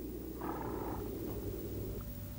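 A horse blowing through its nostrils, a low rolling snort lasting about two seconds.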